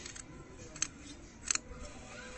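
Large tailor's scissors cutting red blouse fabric: two sharp snips of the blades closing, the first a little under a second in and the second about half a second later.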